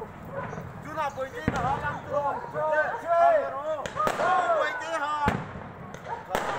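Aerial fireworks bursting over a crowd, with about three sharp bangs spread through the few seconds, over the continuous chatter of many onlookers.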